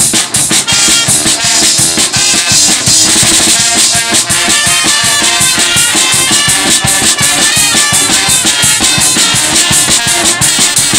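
Carnival brass band (zaate hermenie) playing live: trombones and trumpets over a snare drum and cymbals keeping a steady beat.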